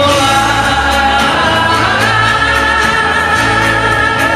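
A woman singing live into a microphone over amplified backing music, holding one long note through the second half.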